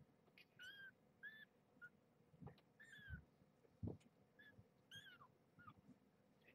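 Faint, high-pitched mews from two-and-a-half-week-old kittens being woken from sleep, about nine short calls, some dipping in pitch at the end, with a couple of soft thumps from handling on the bedding.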